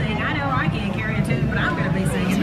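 Speech over a public-address system, with a steady low rumble underneath.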